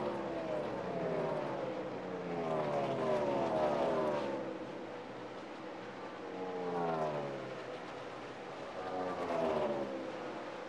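NASCAR Cup stock cars' V8 engines at racing speed passing a trackside microphone one after another, each pass a falling pitch as the car goes by.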